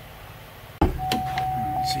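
Low room tone, then an abrupt thump a little under a second in, after which a steady high-pitched tone sets in and keeps sounding.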